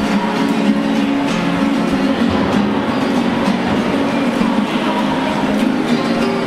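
Acoustic guitar strummed in steady chords, echoing in a concrete tunnel, over a dense rumbling wash of noise.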